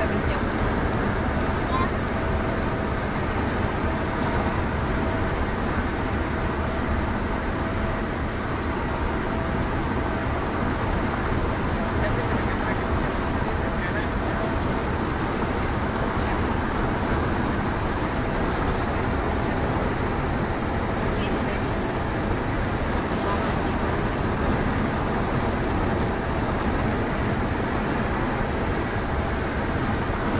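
Steady road and engine noise of a car cruising along a highway, heard from inside the cabin.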